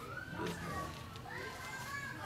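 Faint children's voices in the background, high-pitched calls rising and falling.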